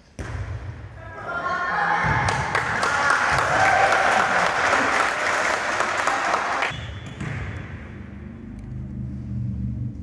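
Many girls' voices shouting and cheering in a gym, with some clapping, swelling for about six seconds and then dropping off sharply, leaving lower chatter and a few dull thuds.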